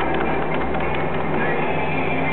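Electric potter's wheel running steadily with a low hum, wet clay rubbing and knocking against the hands pressing down on it as it is being centered.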